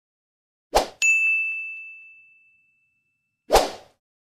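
Editing sound effects for a video intro: a short noisy burst, then a single high, bell-like ding that rings out and fades over about a second and a half, then another short noisy burst near the end.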